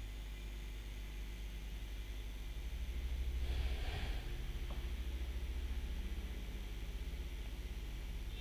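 Steady low hum and hiss of background noise from a microphone, with a brief soft rustling swell about three and a half seconds in and a faint tick just after.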